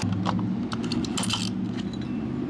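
A car's fuel cap being twisted by hand in the filler neck, with a series of short clicks from the cap and the metal fuel door, over a steady low hum.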